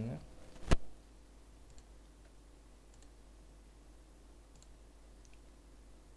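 A single sharp computer mouse click under a second in, as a drawing tool is selected, followed by low room tone with a few faint ticks.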